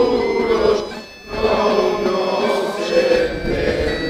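Galician gaita bagpipes playing a melody over their steady drones, with a crowd singing along. The music drops off briefly just after the first second, then carries on.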